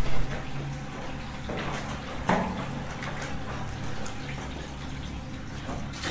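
Footsteps splashing through shallow water in a concrete drainage pipe, echoing, over a low steady rumble; the loudest splash comes a little over two seconds in.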